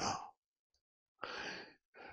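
A man's short audible breath, a sigh into a handheld microphone, about a second in, after his last word fades out.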